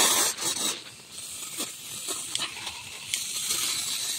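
Pump-pressurised garden hose spraying a strong jet of water onto moss trays and plants: a steady hiss, loudest at the very start, easing about a second in and then building again.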